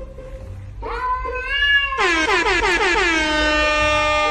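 A cat meows about a second in. Then a loud added comedy sound effect begins: a rapid run of falling pitch glides that settles into a held, horn-like chord and cuts off suddenly. Background music runs underneath.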